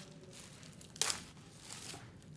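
Clear plastic wrapping crinkling as a book is pulled out of it by hand, with one sharp, loud crackle about a second in.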